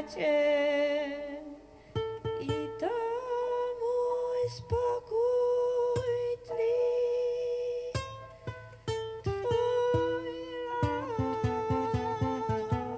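Live song with upright piano accompaniment: a voice holds long, wavering melody notes over piano chords, and in the last few seconds the piano plays a run of quick, evenly spaced notes.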